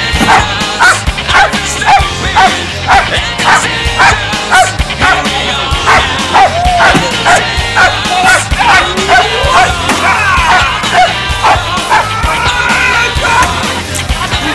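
A police dog barking repeatedly, a rapid run of about two barks a second, over loud rock music with a steady beat.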